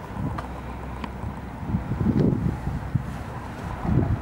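Wind buffeting the camera's microphone: an irregular low rumble in gusts, strongest about two seconds in and again near the end, with a few faint light ticks.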